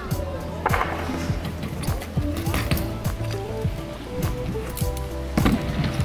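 Background music over BMX riding on concrete: tyres rolling across the ramps, with several sharp knocks from landings and impacts.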